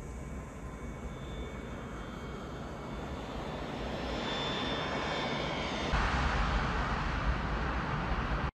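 Jet airliner coming in low overhead, its engine noise growing steadily louder and swelling sharply about six seconds in, with a faint high whine on top.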